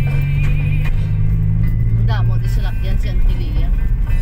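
A car driving slowly, heard from inside the cabin: a steady low engine and road drone, with music and voices over it.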